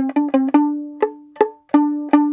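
Violin strings plucked pizzicato: a few quick repeated notes in the first half second, then single plucks spaced a little under half a second apart, each note ringing briefly and dying away.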